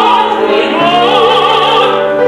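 Operatic duet: soprano and tenor voices singing with wide vibrato over upright piano accompaniment.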